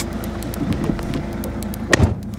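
Car engine running, heard from inside the cabin as a steady low hum and rumble, with one sharp click near the end.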